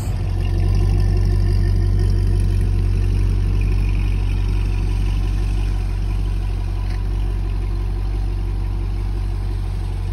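C6 Corvette's V8 running at a low, steady idle with a deep exhaust rumble as the car rolls slowly along at walking pace.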